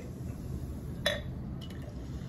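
Carbonated soda poured from a glass bottle into a glass, with one sharp clink of glass about a second in.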